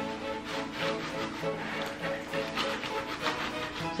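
Background ragtime piano music with a steady, bouncy beat.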